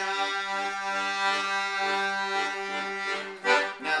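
Piano accordion playing, a low note held steadily under a pulsing, repeating pattern of chords.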